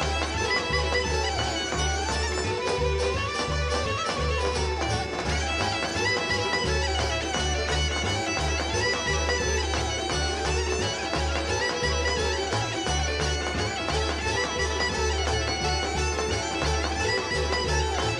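Bulgarian folk instrumental music: a bagpipe melody over a steady drone, with a regular low beat underneath.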